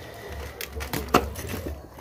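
Shards of a broken clay pot being handled, giving a few light clicks and one sharp crack a little over a second in.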